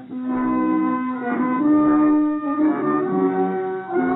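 Instrumental accompaniment of a 1918 Yiddish theater song recording, playing alone between sung lines: a short melody of held notes that change pitch every half second to a second.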